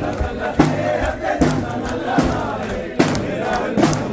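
A crowd of many voices singing and chanting a carol together, with a few drum beats, one about half a second in and another near three seconds.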